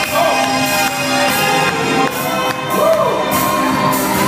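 Loud gospel praise-break music: held chords with a steady beat of high crashes, and voices singing and shouting over it.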